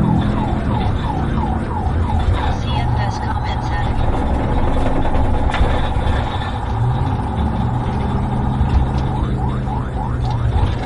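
Police car siren in a rapid yelp, about three rising-and-falling sweeps a second. It switches to a fast, steady warble about four seconds in and returns to the yelp near the end. It is heard from inside the moving patrol car, over engine and road noise.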